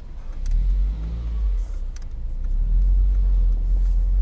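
Toyota MR-S's mid-mounted 1ZZ-FE 1.8-litre four-cylinder engine pulling away from a stop. The engine rises in pitch as it accelerates about half a second in, under a heavy low rumble heard from inside the open-top cabin.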